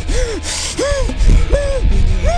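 Men letting out short gasping cries right after gulping a drink, three in quick succession, each rising and falling in pitch. Background music with a low beat plays underneath.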